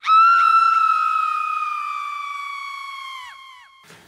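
A woman's long, high-pitched scream: one held note that starts suddenly and loud, then slowly sinks in pitch and fades over nearly four seconds, ending with a brief downward drop.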